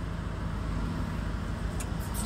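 Steady low rumble of a car running, heard from inside the cabin, with a faint click near the end.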